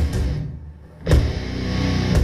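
Live old-school death metal band playing distorted electric guitars, bass and drums. About half a second in the band stops short, leaving a brief gap with a fading low ring, then crashes back in together with a loud hit just after a second in.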